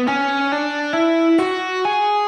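Electric guitar playing an ascending scale in single notes sounded by fretting-hand hammer-ons alone, with no pick: about five notes, each a step higher than the last, roughly two a second.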